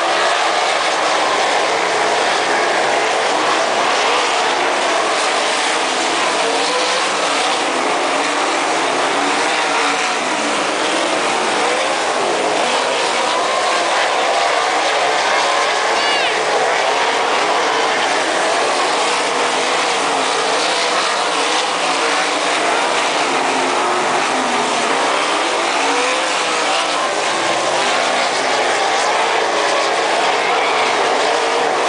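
A field of 360 winged sprint cars racing on a dirt oval: several 360-cubic-inch V8 engines revving at once, their overlapping pitches wavering up and down as the cars lift for the turns and get back on the gas.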